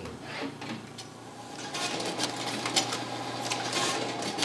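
OPEX Model 72 rapid extraction machine running, with a steady hum and a fast run of mechanical clicks as it feeds and slits open mail ballot envelopes, the clicking growing louder about halfway through.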